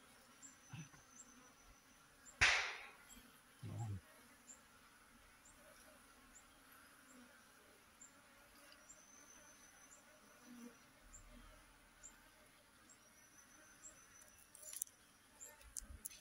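Honeybee swarm clustered on a tree branch, buzzing faintly and steadily. Faint high chirps repeat about twice a second over it. There is one brief loud noise about two and a half seconds in, and a dull thump just before four seconds.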